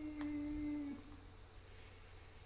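A person humming one long, level "mmm" that stops about a second in.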